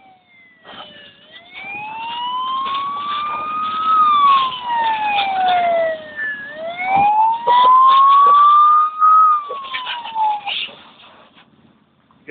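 Fire engine siren wailing slowly, with two long rises and falls in pitch. Scattered clicks and crackles sound over it, and it fades out near the end.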